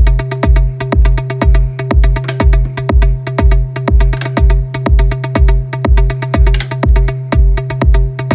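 Electronic techno loop from a hardware rig. A four-on-the-floor kick from the DAW hits about twice a second, locked in sync with a sustained bass tone and a rapid ticking synth arpeggio from an Elektron Digitone sequenced by an Octatrack, all clocked through an ERM Multiclock.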